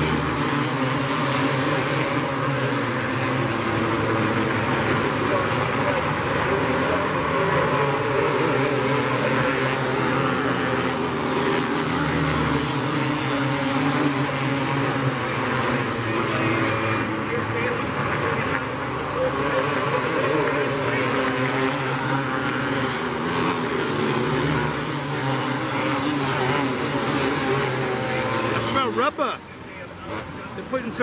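Several outlaw karts racing on a dirt oval, their small engines running hard and overlapping in one continuous drone. The sound drops off sharply near the end.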